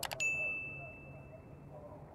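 Two quick mouse clicks followed by one bright bell ding that rings out and fades over about a second and a half: a YouTube subscribe-button notification sound effect.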